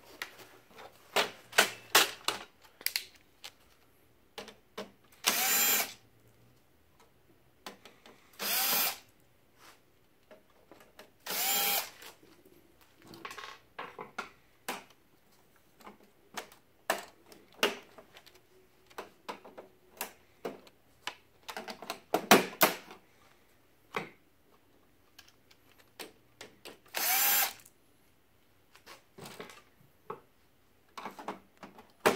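Cordless drill-driver spinning in four short bursts of under a second each, taking out the printer's cover screws. Between the bursts come many clicks and knocks of plastic panels and parts being handled.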